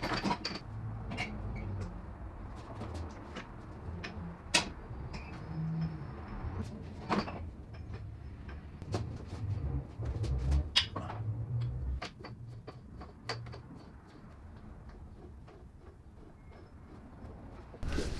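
Irregular knocks, clicks and clunks of metal as the BMW E60's one-piece exhaust system is shifted back under the lifted car. Busier for the first twelve seconds or so, then quieter.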